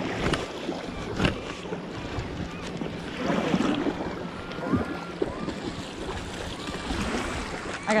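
Wind buffeting the microphone and small waves lapping at a gravel shore, with a couple of sharp knocks in the first second or so.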